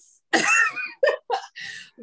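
A woman's short, breathy laugh in a few bursts.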